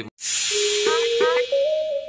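A loud whoosh sound effect from a video logo intro, followed by electronic music starting about half a second in: a held synth note that steps up in pitch, with short rising chirps over it.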